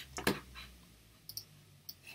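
Computer mouse buttons clicking: a quick cluster of sharp clicks at the start, the loudest about a third of a second in, then two fainter single clicks later.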